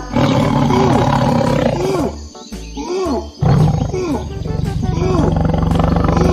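Big-cat roar sound effect over bouncy children's background music. One roar lasts about two seconds from the start, and a second begins about three and a half seconds in and runs on.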